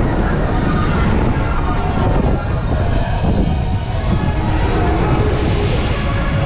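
Wind rushing loudly and steadily over the microphone of a rider on an S&S swing ride as the swing arm sweeps through its arc, with a deep rumble underneath.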